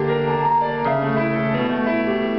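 Grand piano played solo in a concert hall, heard from the audience: a slow passage of held, overlapping notes and chords that change about every half second.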